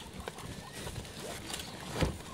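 Capybaras walking through grass right at the microphone: soft footfalls and rustling, with a louder brush near the end as one passes against it.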